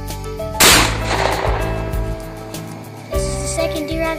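A single .50-caliber muzzleloader rifle shot about half a second in, its echo dying away over about a second, heard over steady background music.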